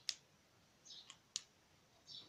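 Three faint sharp clicks, the first right at the start and the other two close together about a second later, among a few short, high, slightly falling chirps of a small bird.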